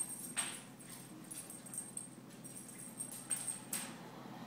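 Two small dogs play-fighting on a hardwood floor, with scuffling and short noisy bursts about half a second in and again near the end, over a low steady hum.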